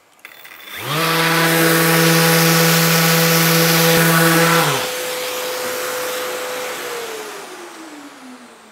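Festool random orbital sander lightly sanding a veneered plywood board: it spins up, runs with a steady hum, lightens about halfway through, then falls in pitch as it winds down near the end.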